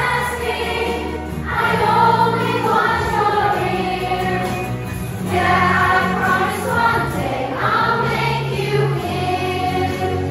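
A group of children singing together in unison, reading from song sheets, over an instrumental accompaniment whose sustained low notes change every few seconds.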